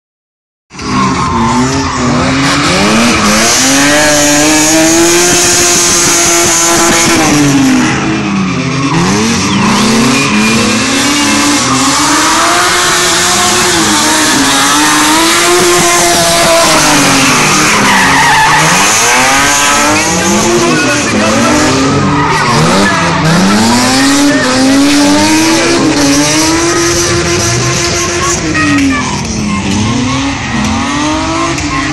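BMW E36 saloon drift car sliding at full throttle: the engine revs rise and fall over and over, every two to three seconds, over continuous loud tyre squeal from the spinning rear tyres.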